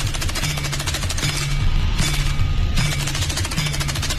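Fast percussion-led dance music in Sattriya style: a dense run of very rapid strokes, with a low note recurring at a steady beat.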